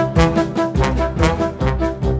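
Theatre orchestra playing an instrumental passage, led by brass over regular percussive accents.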